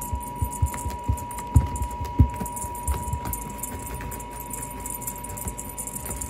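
A cat plays with a wand toy on carpeted stairs: the toy rattles on its string while the cat's paws and body thump on the carpet. The thumps come quickly in the first two seconds or so, the loudest about one and a half and two seconds in, then fade to lighter scuffling.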